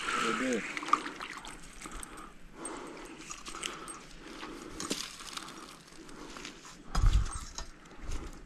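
Faint clicks and rustling as a largemouth bass is reeled in on an ultralight spinning rod and reel, with light splashing from the water. A brief voice sound comes just after the start, and a low rumble about seven seconds in.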